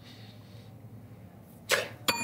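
Quiet room with a low steady hum, then one short, breathy whoosh near the end.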